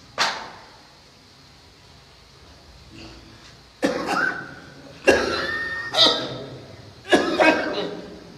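A person coughing: one short cough at the very start, then a run of four loud coughs about a second apart in the second half.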